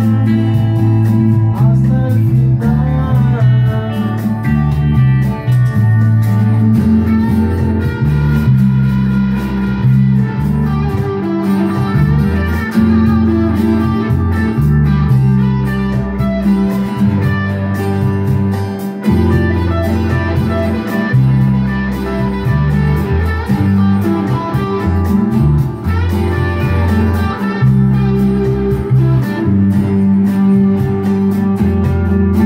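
Electric guitars and an electric bass guitar playing a song together, the bass moving through held notes beneath guitar chords and lead lines, with a few bent guitar notes about two to three seconds in.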